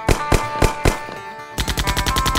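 Gunshot sound effects: four single shots in the first second, then near the end a rapid burst of machine-gun fire, over background music.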